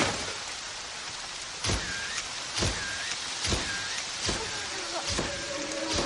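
Heavy, steady rain, with a low thump repeating a little more than once a second from about two seconds in.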